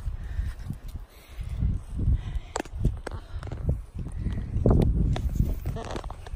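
Wind buffeting the phone's microphone as a low, uneven rumble, with footsteps and a few sharp knocks from the phone being carried and handled while walking.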